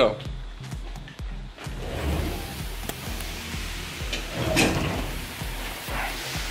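The steel door of a hot wood-fired smoker is opened, with a few metal knocks. A steady hiss of steam follows from water boiling inside the smoker.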